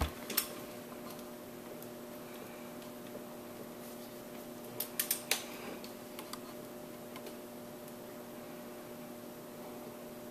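Steady faint hiss of shop air from a leak-down tester flowing into a Chrysler Crown flathead six cylinder that leaks about 95%, escaping into the crankcase and oil pan past bad rings or valves. A steady hum runs underneath, and there are a few light clicks about five seconds in.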